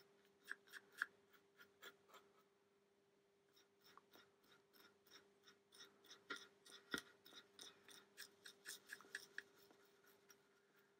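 Faint, soft ticking and scratching of a stiff-bristled, almost dry paintbrush dabbed in a stippling motion against the side of a model coal wagon. The ticks are sparse at first and come a few per second in the second half. A faint steady hum runs underneath.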